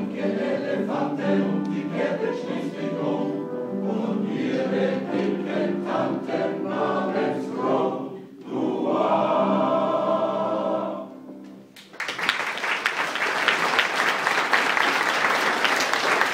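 Men's choir singing the closing bars of a song, ending on a long held chord that fades away. After a brief pause, about twelve seconds in, the audience starts applauding.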